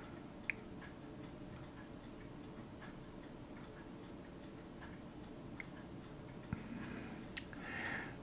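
Faint, scattered ticks of fine metal tweezers against a tiny plastic model part, a few seconds apart, with a sharper click near the end, over a low steady room hum.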